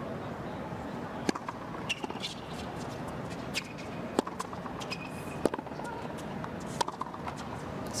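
Tennis ball struck by rackets in a rally on a hard court: sharp single pops every one to three seconds, over a steady hum of crowd and arena noise.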